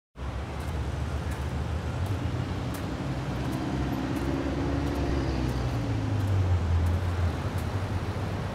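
Low, steady road-traffic rumble, with a vehicle passing that grows louder in the second half, and faint regular clicks about every 0.7 s.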